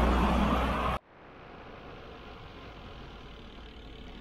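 Wind buffeting the microphone of a bicycle-mounted camera while riding, loud and rumbling, cutting off abruptly about a second in. After that, a quieter steady hum of a car engine and traffic just ahead.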